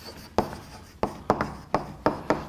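Chalk writing on a chalkboard: a string of short, sharp taps and scrapes as each letter stroke is made, about five of them spread unevenly across two seconds.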